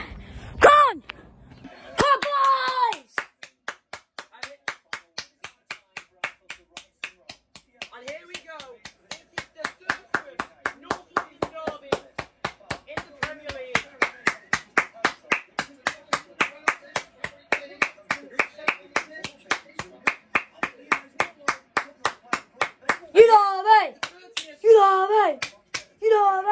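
One person clapping hands in a steady rhythm, about three to four claps a second, for some twenty seconds, stopping near the end as a loud voice takes over.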